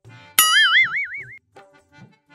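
Cartoon 'boing' sound effect: a sudden twang about half a second in whose pitch wobbles up and down for about a second before fading, over light background music.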